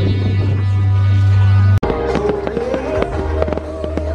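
Music with a strong, deep bass note, with fireworks going off in it. The sound cuts out sharply a little under two seconds in, then resumes with the music and a run of firework bangs and crackles.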